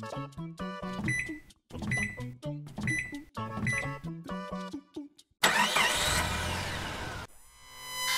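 Bouncy background music of short, separate notes, with four electronic keypad beeps about a second apart as a passcode is keyed in. About five and a half seconds in, a loud rushing machine sound effect with sweeping tones takes over and cuts off sharply, and a steady electronic tone swells in near the end.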